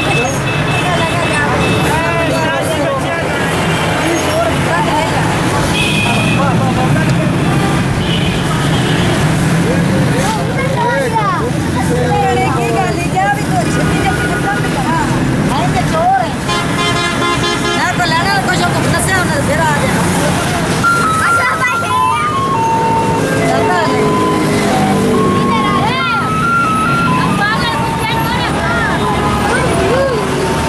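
Busy street ambience: crowd voices talking over the running engines of passing traffic and motorcycles, with a vehicle horn sounding about halfway through.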